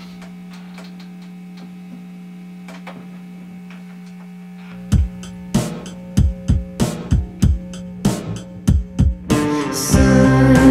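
Indie rock band starting a song: a steady amplifier hum, then about five seconds in a rhythmic pattern of sharp hits starts, and near the end sustained electric guitar and keyboard chords come in as the full band enters.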